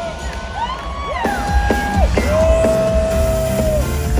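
Live pop concert music heard from within the audience: a steady bass beat under long held melody notes that slide up and down, with crowd noise beneath.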